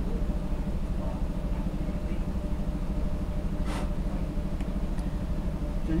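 Steady low mechanical hum of a running machine in the workshop, with one short rustle about two-thirds of the way through and a couple of faint ticks.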